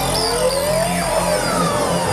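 Live electronic dance music: a synthesizer sweep rising in pitch over about a second, then falling tones, over a steady low beat.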